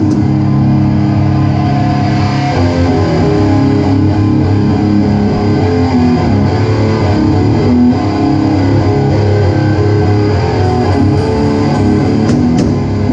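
Hardcore band playing live: heavy distorted electric guitar and bass riffing loudly, with a change of riff about two and a half seconds in.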